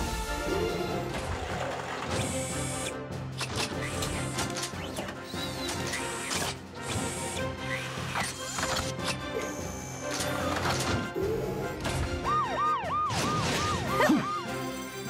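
Cartoon soundtrack: upbeat music over mechanical clanks and whirs from robotic arms fitting gear onto rescue vehicles. Near the end a fast warbling siren sounds, rising and falling about three times a second.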